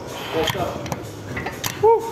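About three sharp metallic clicks and clanks from gym equipment as a plate-loaded machine is let go, with short bits of a man's voice between them.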